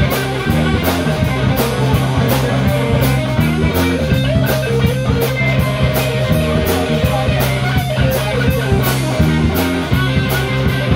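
Live rock band playing an instrumental passage: a Les Paul-style electric guitar plays melodic lines over bass guitar and a drum kit keeping a steady beat on the cymbals.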